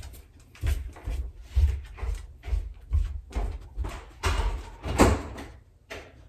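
A run of irregular knocks and thuds with rustling, roughly two a second, the loudest about five seconds in, then dying away.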